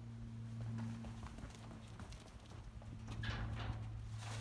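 Footsteps knocking on asphalt as a person walks up to a plastic-lidded dumpster, then a short scraping burst near the end as the lid is lifted open. A steady low hum runs underneath.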